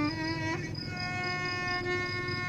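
Violin bowing long held notes in the Iraqi rural tawr al-Mohammadawi, sliding up to a new note about half a second in and sustaining it, with an oud accompanying.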